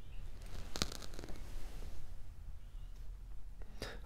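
Faint handling noise of plastic and wired electrical parts, with one sharp click a little under a second in and a few softer ticks after it.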